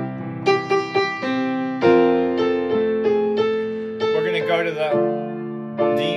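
Grand piano played slowly: a series of chords in F major, each struck and left to ring, with melody notes moving over them.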